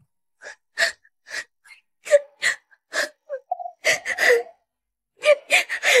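A young woman sobbing: a string of short, breathy gasping sobs, with a brief whimper about halfway through.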